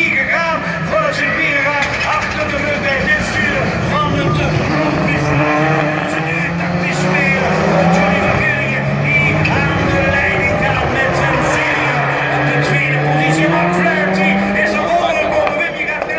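Rallycross Supercars racing on the circuit, several engines revving hard, their pitch climbing and dropping again and again as the cars accelerate and change gear.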